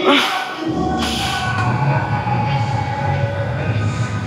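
Two sharp breaths about a second apart as a lifter braces under a loaded barbell before a heavy bench press, over a steady low hum and background music.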